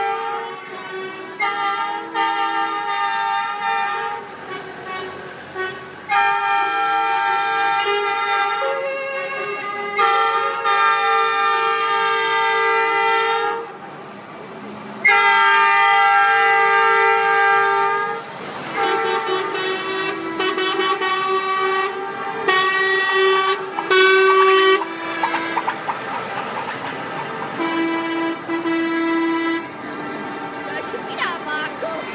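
Truck horns sounding in a string of long blasts, several horns at different pitches overlapping, with a run of shorter toots about two-thirds of the way through, over the engines of slowly passing lorries.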